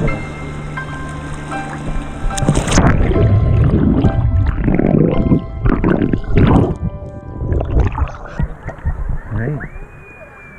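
Background music with a steady melody; from about two and a half seconds in until about eight seconds, loud water splashing and churning against an action camera that dips under the surface drowns it out, then fades back.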